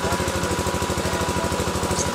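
A steady, machine-like low drone with a rapid, even pulse of about two dozen beats a second, with a thin steady high tone above it.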